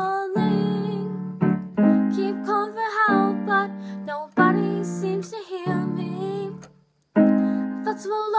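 Slow piano chords under a young woman's singing voice holding sustained notes. The music stops briefly about seven seconds in, then picks up again.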